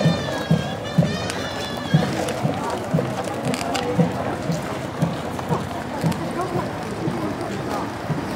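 A walking procession crowd chattering, with a steady low drum beat about twice a second. A high wavering tone sounds during the first two seconds.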